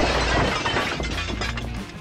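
A sharp crash that fades away over about two seconds, over background music.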